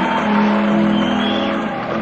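Live band holding sustained chords at the start of a song, over an even wash of audience noise, on a lo-fi concert recording.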